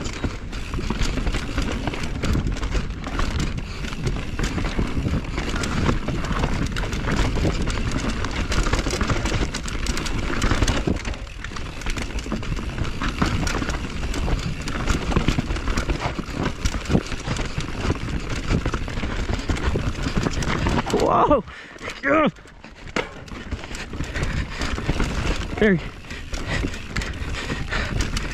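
Mountain bike descending a rough dirt forest trail at speed, heard from a camera mounted on the bike or rider: steady wind rush on the microphone with tyre roar and constant rattling of the bike over roots and bumps. About three-quarters of the way through the noise drops away briefly and a couple of short high rising squeals sound.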